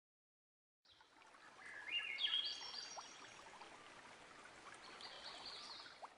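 Faint intro sound effect over a soft steady hiss: about a second in, a rising run of high chime-like notes climbs step by step, and a few more high notes follow near the end.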